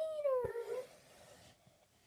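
A girl's voice drawing out a long sung note that bends up and then falls away, cutting off under a second in.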